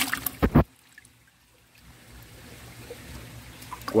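Water splashing and sloshing in a plastic bucket as a hand reaches in to grab tilapia, with a few loud splashes in the first half second. After that there is a short near-quiet spell, then faint water sounds.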